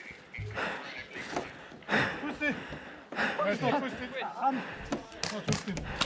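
Faint men's voices calling out at a distance, too far off to make out, with a few sharp clicks near the end.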